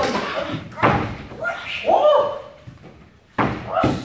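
A body slamming against a pair of double doors several times in a scuffle, with a shout or grunt about halfway through.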